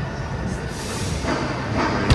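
Ambience of a large terminal hall: a steady low rumble with faint background music and a brief hiss about halfway through.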